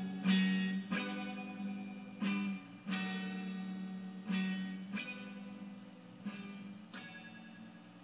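Guitar played through effects, picking slow chords in pairs of notes about every two seconds, each one ringing out and decaying, the music fading gradually quieter.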